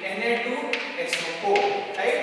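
Chalk tapping against a blackboard while writing, a few sharp taps about a second in, with a man's voice alongside.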